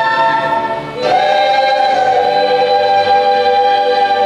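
Children's choir singing a long held chord; it breaks off briefly about a second in and moves to a new chord, which is then held steadily.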